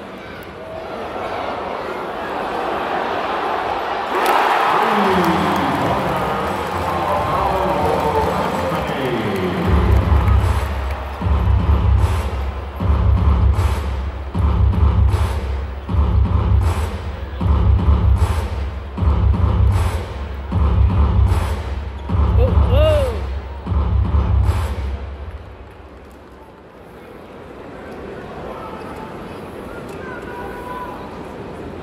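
Arena crowd cheering, swelling about four seconds in, then a heavy bass drum beat over the arena PA, about one deep hit a second for some fifteen seconds over the crowd noise, before the crowd settles to a murmur near the end.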